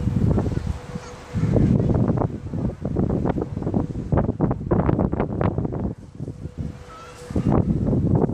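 Gusty wind buffeting the microphone: a low rumble that swells and drops, growing loud about a second and a half in and easing briefly near the end.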